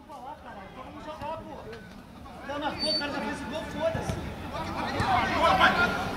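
Several voices of players and onlookers talking and calling out on a football pitch, faint at first and getting louder toward the end.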